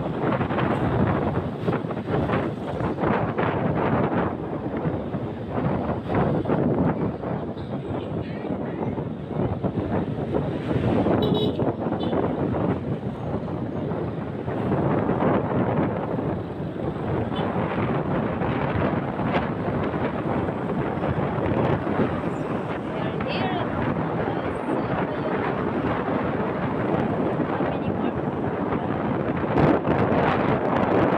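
Wind rushing over the microphone of a moving motorcycle, rising and falling, with the motorcycle's engine and road noise beneath.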